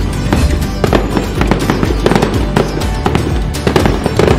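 Firework bangs and crackles, a rapid irregular run of sharp pops, over festive background music.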